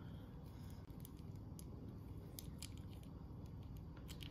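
A few faint, scattered clicks of fingers handling a small metal sewing-machine bobbin case, over a low steady room hum.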